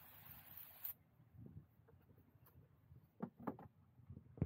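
Near silence: a faint hiss that cuts off abruptly about a second in, then a few faint soft clicks.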